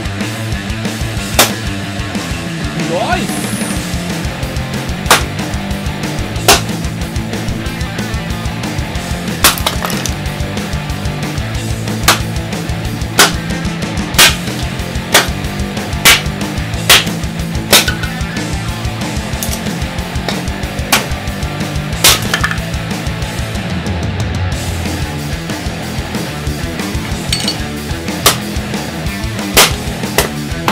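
A small axe with a 3D-printed PETG handle chopping and splitting a wooden log, more than a dozen sharp strikes at uneven intervals, over background music.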